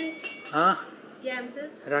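A short, high ringing clink at the start, several clear tones that die away within half a second, followed by brief voices.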